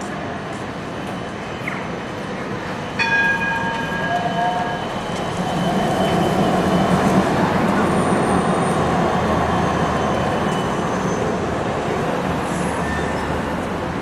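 A modern low-floor city tram passes close by on street rails. It rises into a low rumble about five seconds in, with faint high wheel squeal, then slowly eases off over city street noise. A short ringing tone sounds about three seconds in.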